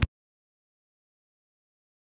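The sound cuts off abruptly right at the start, then total silence.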